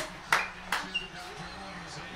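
Two sharp hand claps close together, then a brief high ping and faint voices in the room.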